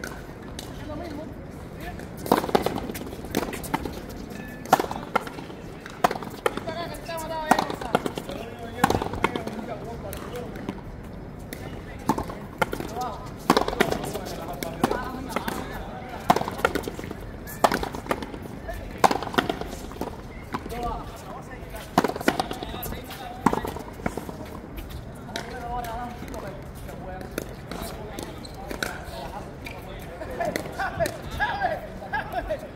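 A frontenis rally: a ball struck by tennis-style rackets and hitting the front wall, a run of sharp cracks about every second to second and a half for some twenty seconds, then stopping.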